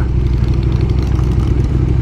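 KTM Super Duke GT's V-twin engine running steadily at low revs as the motorcycle rolls along slowly.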